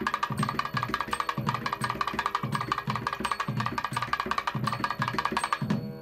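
Temple ritual drumming: a drum beating a steady rhythm about twice a second under a fast, ringing percussive pattern.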